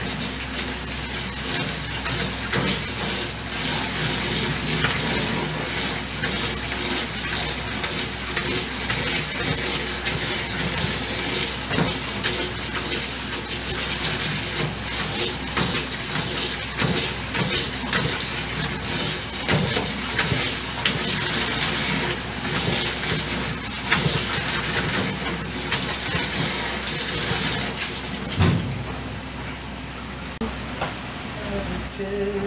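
Kitchen tap running steadily into a plastic colander in a stainless steel sink as hands rinse and rub food in it. The water shuts off near the end.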